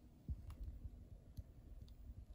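Faint, scattered clicks and soft low thumps. A thump about a third of a second in is the loudest.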